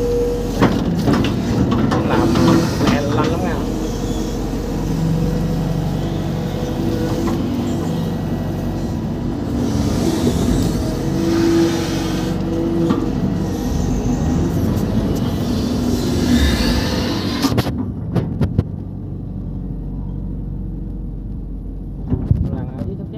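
Hitachi EX120-1 hydraulic excavator heard from inside its cab: the diesel engine runs steadily, its note shifting as the hydraulics take the load of the digging, with a few knocks in the first three seconds. The sound turns duller and quieter about four seconds before the end.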